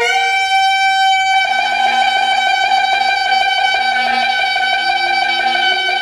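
Solo saxophone holding one long high note; after about a second and a half the note takes on a rough, pulsing edge, with a fainter lower tone sounding beneath it.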